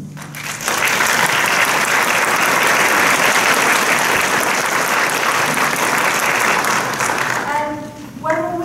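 Theatre audience applauding: the clapping swells about half a second in, holds steady, and dies away near the end.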